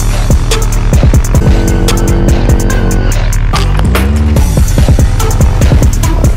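Loud electronic background music with a fast, heavy beat and bass lines that sweep up and down.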